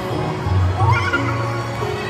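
Background music with a sustained bass line and held tones. About a second in, a brief rising squeal-like call cuts across it.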